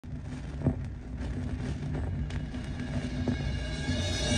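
Turntable stylus riding the run-in groove of a vinyl record: surface noise with a low rumble, a steady hum and scattered crackles and pops, one louder pop under a second in.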